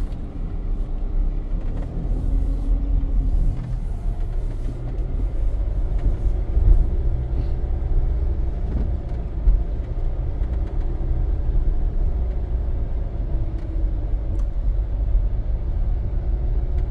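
Car driving slowly along an unpaved farm track, heard from inside the cabin: a steady low rumble of engine and tyres, with a couple of brief knocks from bumps.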